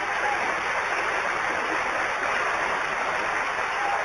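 A large studio audience applauding, steady clapping throughout.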